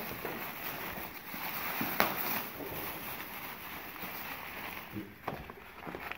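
Rustling and crinkling of a black plastic garbage bag and paper wrapping as items are dug out and unwrapped by hand, with one sharp crackle about two seconds in.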